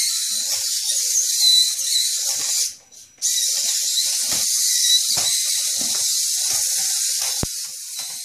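Walking Vex robot's rotating curved legs knocking irregularly on a tile floor and textbooks, over a steady high hiss. The sound cuts out briefly about three seconds in, and there is a sharp click near the end.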